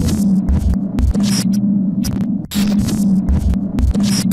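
Logo-intro sound effects: a glitchy electrical hum that cuts in and out abruptly, broken by bursts of static crackle and a few low thuds.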